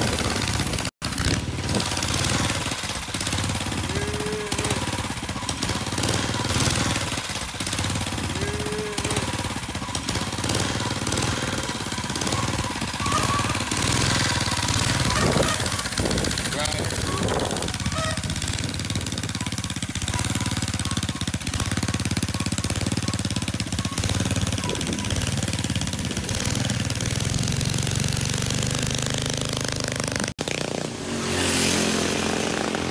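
Small engine of a homemade chopper-style trike running with a rattly, uneven sound, briefly cut off about a second in.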